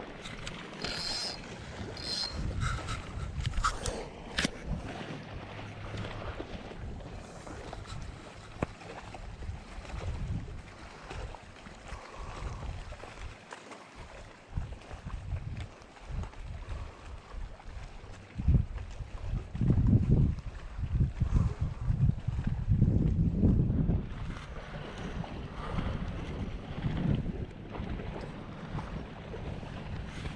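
Wind buffeting the microphone over choppy lake water, in gusts that grow stronger and more frequent in the second half, with a few light clicks in the first few seconds.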